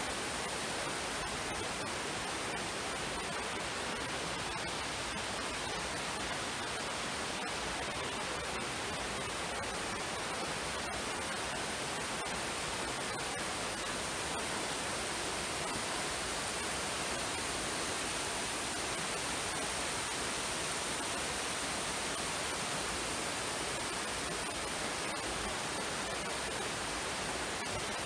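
Waterfall spilling down a rock face beside a river: a steady, even rush of water.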